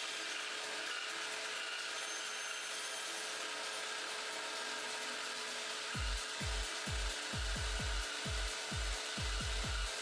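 Craftsman band saw running and cutting through a cured resin-and-wood panel: a steady hiss with a constant hum. About six seconds in, background music with a deep, falling bass beat comes in under it.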